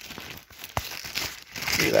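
Plastic packaging crinkling and rustling as a part is pulled out of a cardboard box, with one sharp knock a little under a second in.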